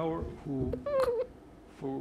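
Only speech: a man's voice talking faintly in short phrases, much quieter than the interpreter's voice around it.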